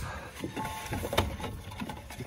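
A few light clicks and knocks with rustling as a ribbed serpentine belt is worked off the pulleys of a semi-truck engine by hand, the engine not running.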